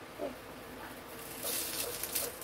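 Hot hair-styling iron clamped on hairspray-coated hair, giving a soft hiss for about half a second near the end. There is a brief low murmur of voice near the start.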